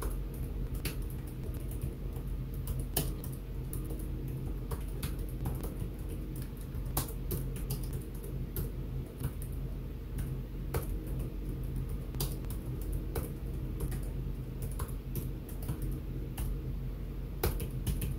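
Typing on a computer keyboard: irregular keystrokes spelling out shell commands, over a steady low hum.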